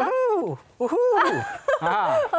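A person's voice imitating a horse's whinny: a few short voiced calls that rise and fall in pitch, acted out for a jumping horse.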